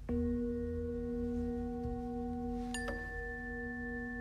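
A bell-like tone is struck and rings on steadily in several pitches. A second, higher strike comes nearly three seconds in, over a low steady hum.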